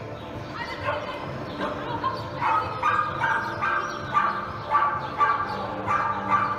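A dog barking repeatedly, about two barks a second, the barks growing louder from midway.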